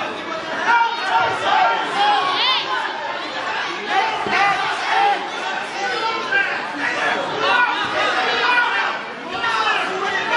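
Many voices of spectators and coaches calling out and talking over one another in a gymnasium, steady throughout, with one high voice rising and falling about two and a half seconds in.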